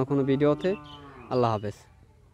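A cow mooing: a long low call that trails off, then a shorter second call past the middle.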